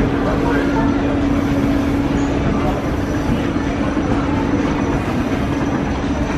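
Mall escalator running: a steady hum with a continuous rumble from its drive and moving steps, with faint crowd chatter behind.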